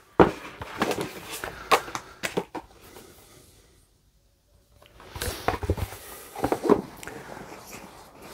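Cardboard game boxes and paper sheets being handled: a series of clicks, knocks and rustles as sheets are moved and boxes are shifted and set down on a tabletop, broken by about a second of silence midway.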